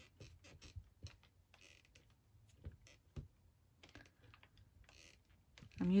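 Faint, scattered light taps and clicks with a little soft rustling: hands pressing and shifting a clear acrylic block with a photopolymer stamp onto cardstock on a foam mat.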